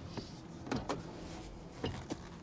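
Quiet interior of a nearly stopped electric car: a faint steady hum with a few irregular light clicks.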